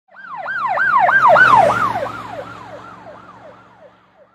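Emergency-vehicle siren in a fast yelp, sweeping up and down about three times a second over a faint low hum. It swells in the first second and a half, then fades out.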